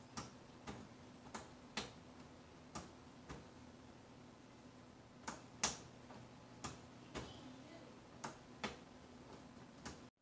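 Faint, irregularly spaced light clicks, often in pairs about half a second apart, over a low steady hum.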